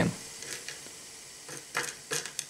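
Glass stirring rod stirring zinc granules in a glass beaker of hot sodium hydroxide solution: faint scraping with a few light ticks, then a louder scratchy rattle near the end.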